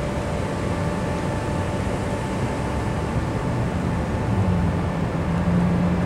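City street traffic: a steady hum of vehicle engines and tyres, with a low engine drone growing louder in the second half.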